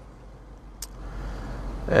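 Low steady rumble of a car's cabin noise, with one brief click a little under a second in.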